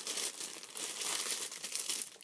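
Clear plastic bag crinkling irregularly as it is handled.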